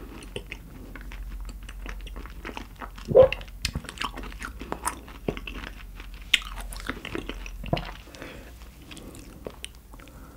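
Close-miked wet chewing, a steady run of small irregular smacks and clicks as a mouthful of raw shrimp is eaten. One louder, lower sound comes about three seconds in.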